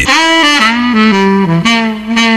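Saxophone melody in the music bed: a run of short held notes stepping downward, then one longer note held near the end.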